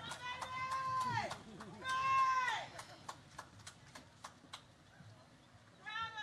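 Audience cheering for a graduate: two long, high whoops, the second about two seconds in. A few scattered claps follow.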